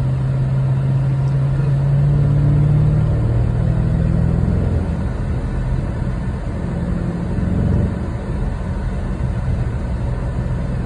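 Dodge car's engine heard from inside the cabin under acceleration, with a manual gearbox. The engine note rises, drops at about three seconds in as a gear is changed, then rises again and drops near the end. Steady road noise runs underneath.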